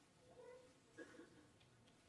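Near silence of a hall's room tone, with two faint, short pitched sounds about half a second and a second in.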